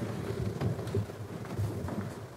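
A congregation stirring after a prayer: a low, jumbled rustle and murmur of many people shifting, with scattered light knocks.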